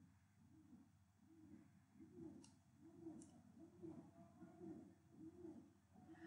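Near silence: faint room tone with two faint clicks a little past the middle.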